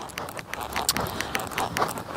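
Horse trotting on sand arena footing: a run of short, muffled hoofbeats.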